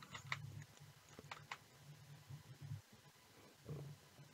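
Near silence: a low hum with a few faint, short clicks at the computer in the first second and a half.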